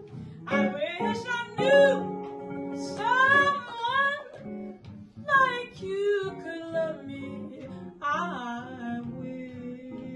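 A woman singing a jazz ballad in long phrases that bend in pitch, accompanied by jazz guitar.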